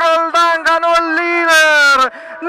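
A man's excited, shouted voice holding long drawn-out vowels at a high pitch, with short breaks between: a race announcer calling a cyclist's win at the finish line.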